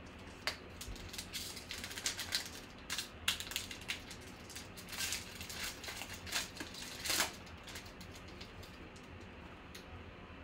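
Trading-card pack wrapper crinkling and tearing as it is ripped open by hand: a quick run of sharp crackles that dies away after about seven seconds.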